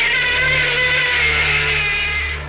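A monster roar sound effect for Gamera: one long roar that starts just before and sinks slightly in pitch as it fades. Underneath runs a low, pulsing ambient music drone.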